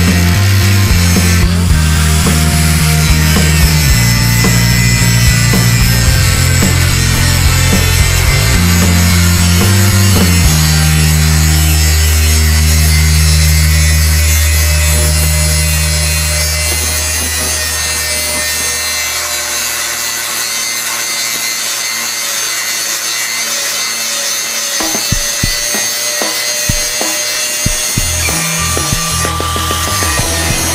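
Electric angle grinder with a thin cut-off wheel cutting through 1095 high-carbon steel bar, running steadily with a dense, hissing cutting noise.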